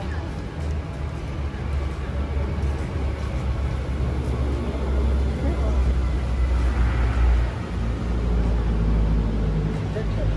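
A loud, uneven low rumble that swells and eases, with faint voices in the background.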